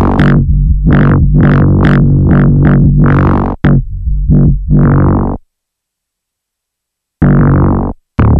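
Elektron Machinedrum UW playing a buzzy, distorted FM synth bass: a run of notes, each opening bright and closing down under a filter. It cuts off abruptly about five seconds in and starts again near the end.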